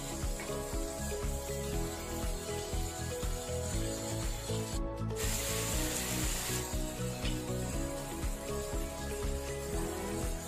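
Shrimp frying in butter in a nonstick pan while a wooden spatula rubs and scrapes the pan bottom as they are stirred, under background music with a steady beat. The sound drops out briefly about halfway, followed by a second or so of sizzling hiss.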